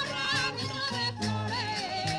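Traditional Spanish folk dance music: a singing voice with a wavering, vibrato melody over instruments and a steady bass line.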